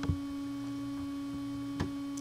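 Steady electrical hum on the recording, a low drone with a fainter higher tone over it, broken by two short clicks: one at the start and one near the end.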